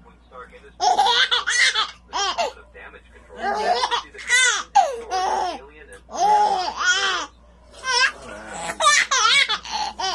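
A baby laughing in repeated bursts, several short peals in a row with brief pauses between them.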